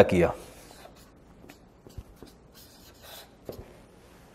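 Marker pen writing on flip-chart paper: a few short, faint scratchy strokes with small taps in between.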